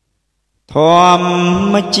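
A man's singing voice in a Khmer traditional song: after silence, about two-thirds of a second in, he starts one long held note.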